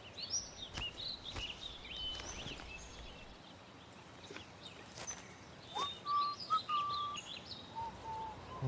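Woodland ambience of small birds chirping: many short rising and falling calls, with a few clear whistled notes in the second half, over a faint outdoor hiss and a few soft clicks.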